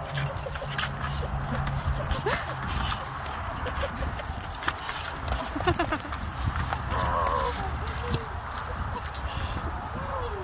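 Labrador retriever whining with excitement in short wavering whines, the clearest about seven seconds in, with light clicks and a low wind rumble on the microphone.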